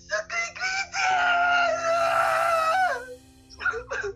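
A boy crying during an emotional outburst, heard through a phone's speaker on a video call: a few short sobbing cries, then about a second in one long, high wail held for about two seconds before it breaks off.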